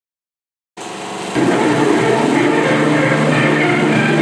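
After a moment of silence a steady hum and running noise start. About half a second later the film's opening title music comes in loud over it, as heard from a 16mm film print being projected.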